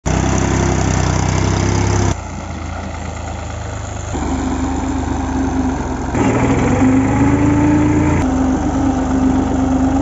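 Diesel tractor engines running in a string of short clips. The engine note changes abruptly about every two seconds, each time the recording cuts to another shot.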